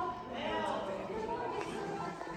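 Several people's voices overlapping as chatter, echoing in a large hall.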